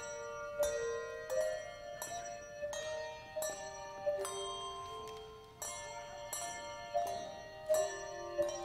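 Handbell choir ringing a piece of music: handbells struck in chords of several notes at once, a new chord about every half second to a second, each left to ring and fade.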